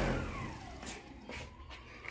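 Car alternator run as a brushless-style motor on 48 V, spinning down: its whine falls steadily in pitch and fades, with a couple of faint clicks.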